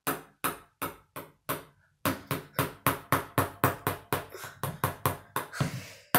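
Table tennis ball bouncing repeatedly on a paddle, sharp light clicks. A few slower bounces at first, then from about two seconds in a quicker steady run of about four to five a second.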